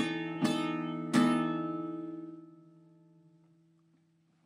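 Acoustic guitar chords strummed twice within about the first second, over a chord already ringing, then left to ring out and slowly fade away.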